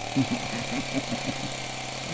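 A man laughing: a run of short pulses, about six a second, that dies away after about a second and a half, over a steady low hum.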